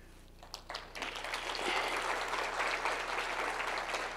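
Audience applauding: a few scattered claps about half a second in, then steady applause from about a second in.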